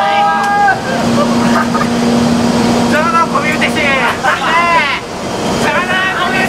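JR EF64 electric locomotive moving slowly along the platform. It makes a steady hum from about a second in until around four seconds, against a general running noise. Voices of people on the platform rise over it.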